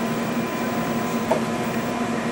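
Steady hum of laboratory equipment, with a low tone and a thinner higher tone held over an even hiss.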